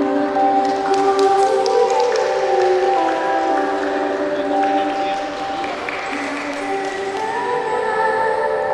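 A vocal group singing together in harmony, several voices holding long notes that move to new pitches every second or so.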